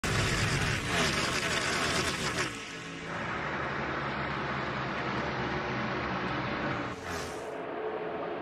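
Sound design for an animated channel logo intro: loud whooshing effects with gliding pitches for the first couple of seconds, then a steady sustained layer of music. A short rising whoosh comes near the end, at the cut to race audio.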